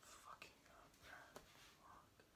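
Near silence, with faint whispering in short patches and a couple of faint ticks.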